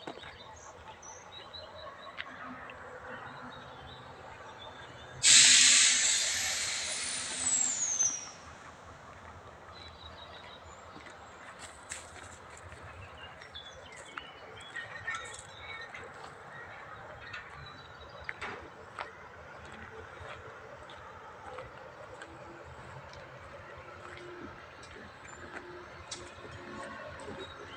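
A sudden loud burst of compressed air venting from the standing train's air system about five seconds in. It hisses and dies away over about three seconds, with a falling whistle as the pressure drops. The rest is a faint outdoor background with scattered chirps.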